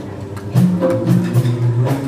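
Boys' vocal group singing a song into microphones through a PA, with sustained low notes that shift in pitch and a sharp percussive beat about twice a second.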